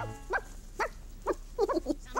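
A voice making four or five short, pitched sounds, about two a second, just after the music cuts off.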